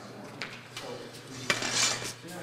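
Steel straight sword (jian) and wooden practice sword making contact: a light tap, then a sharp clack about a second and a half in, followed by a brief scraping hiss of blade sliding on blade.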